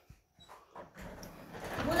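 A dog at a wooden door, pushing it open: a few faint clicks at first, then a rising rustling, scraping noise in the second half.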